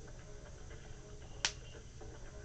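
A single sharp click about a second and a half in, over faint background music and a low hum on the line.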